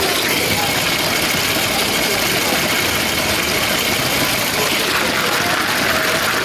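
Lego train's small electric motor running with a steady whine and rolling noise, heard from on board, over the chatter of people in the hall.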